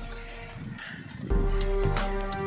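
News-bulletin background music with sustained tones, getting louder with a deep bass just over a second in.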